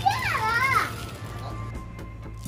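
A young child's high voice calling out with rising and falling pitch for about the first second, then fading. Under it run a steady low hum and faint music.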